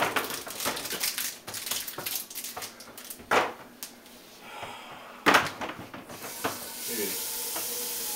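Kitchen clatter: a run of clicks and knocks with two sharp bangs, then from about six seconds in a steady hiss of food sizzling in a hot pan.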